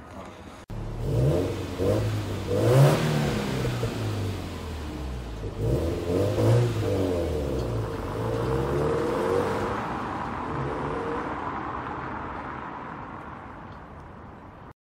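Subaru WRX's turbocharged flat-four engine pulling away, rising in pitch twice as it accelerates through the gears, then fading as the car draws off into the distance.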